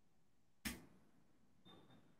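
Near silence, broken once by a single short, sharp click about two-thirds of a second in.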